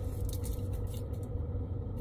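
Steady low rumble of a car's engine and road noise, heard inside the cabin.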